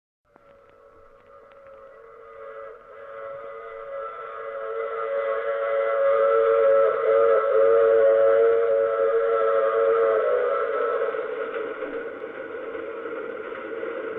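Radio sound effect of a steam train whistle sounding one long chord over a faint train rumble. It swells from quiet to its loudest about halfway through, then fades off.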